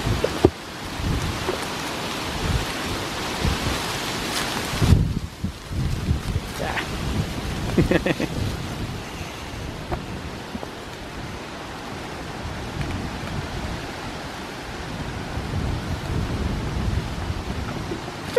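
Leaves and twigs rustling as goats pull at a leafy branch held out to them; the rustle drops away about five seconds in. Under it, a low rumble of wind buffeting the microphone.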